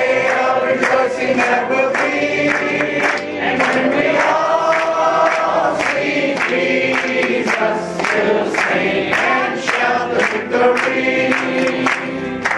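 Congregation singing a hymn together, many voices held on long sustained notes, with organ and piano accompaniment.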